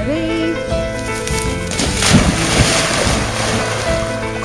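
Background music, with a loud splash about two seconds in, running on for about a second, as a springer spaniel plunges into a shallow stream.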